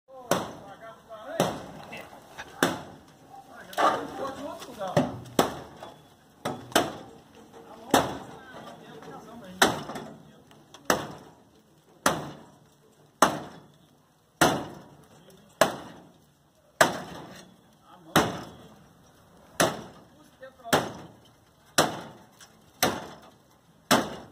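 Axe chopping through the sheet-steel cab of an old FNM truck: about twenty sharp metallic strikes, roughly one every second and a quarter, each ringing briefly.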